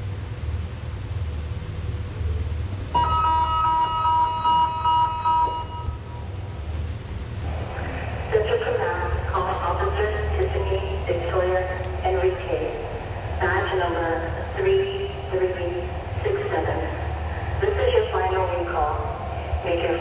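Police radio dispatch for an officer's end-of-watch call: a steady two-pitch alert tone sounds for about three seconds, then a dispatcher's voice comes over the radio with a thin, narrow-band sound. A steady low rumble runs underneath.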